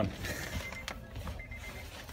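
A car's interior warning chime beeping faintly in a high, repeated tone, over low handling rustle and a single click about a second in as the camera is moved around the cabin.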